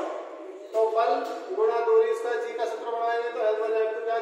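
Only speech: a man's voice talking.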